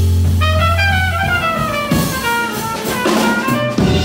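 Big band playing jazz live: brass and saxophone sections over drum kit. A low note is held through the first second while the horns play a line that climbs together in parallel.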